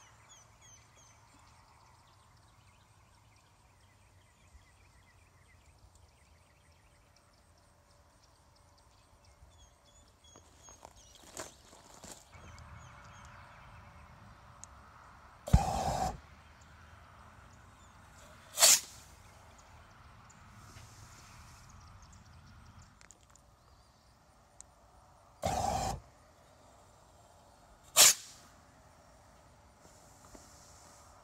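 Two blasts from a Volkswagen Beetle's exhaust flamethrower, each a short burst of about half a second. Each is followed two or three seconds later by a single sharp bang as the bottle rocket it lit goes off.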